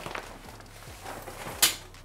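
Handling noise as the wagon's cover is carried off and set aside, with one sharp knock about one and a half seconds in.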